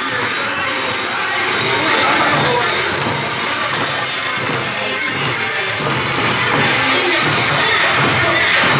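Okinawan eisa festival music played loud, with drums struck by the dancers and a crowd cheering and shouting along.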